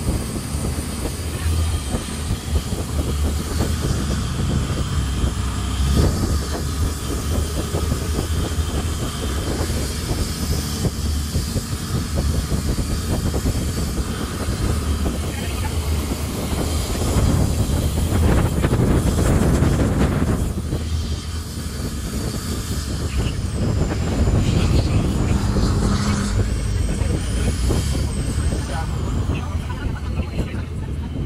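Boat engine running steadily, heard from on board with wind and water noise over it, swelling a little past the middle.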